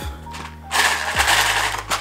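Loose plastic model-kit parts rattling inside a plastic food tub as it is lifted and handled: a dense clatter lasting about a second, starting partway in.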